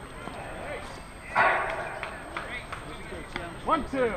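Softball players calling out to one another across the field, with one loud shout about a second and a half in and more calls near the end.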